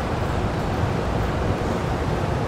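Steady rushing background noise at an even level, with no distinct handling sounds.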